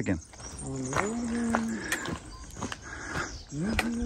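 A person's voice holding two long notes, each about a second long, one about a second in and one near the end, over footsteps crunching on a gravel track.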